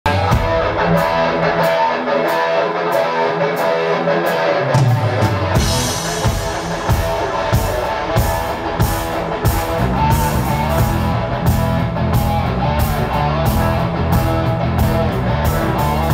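Live rock band playing an instrumental intro: electric guitar riff with bass and drums, a cymbal struck about twice a second, the low end growing fuller partway through.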